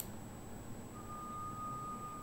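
A single steady electronic beep, one unchanging tone, begins about halfway in over faint room tone, after a short click at the start.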